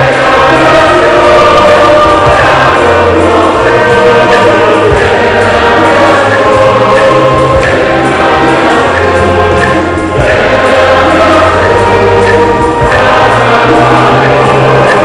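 Church choir singing in full voice over a low bass accompaniment that moves in long held notes.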